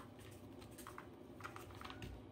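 Faint, scattered clicks of a German Shepherd's claws on a hard floor as it shifts its front paws, a handful of light ticks spread over the two seconds.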